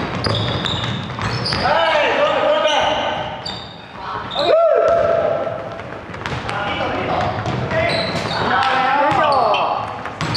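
Pickup basketball game on a gym floor: short, high sneaker squeaks over and over, the ball bouncing, and players calling out across the hall.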